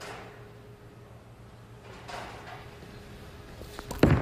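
Quiet bowling-arena room sound with a faint steady hum and soft swells of background noise while the bowler sets up and approaches. There are a couple of light clicks near the end.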